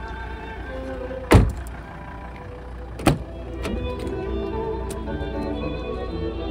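A Volvo XC90's car door shutting with a heavy thunk about a second in, then a lighter knock under two seconds later, over orchestral music from the car radio.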